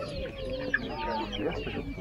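Many caged hens clucking together, a dense chatter of short overlapping calls.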